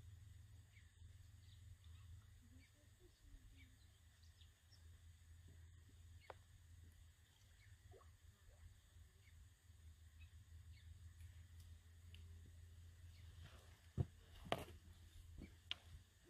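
Near silence: a faint, steady low rumble of outdoor background noise, with a few sharp clicks near the end.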